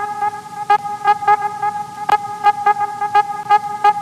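Background music: one held, horn-like tone with a quick, uneven pattern of sharp percussion clicks over it.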